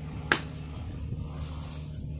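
A wooden palm-branch baton striking the spine of a knife once, a sharp knock about a third of a second in, driving the blade into a palm stem to split it. A steady low hum runs underneath.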